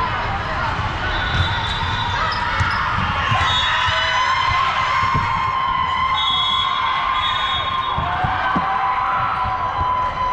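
Indoor volleyball play on a hardwood court: scattered thuds of the ball and players' feet over a steady din of voices from the crowd and surrounding courts of a large sports hall.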